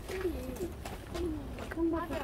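A dove cooing in low, soft phrases, against the murmur of people talking.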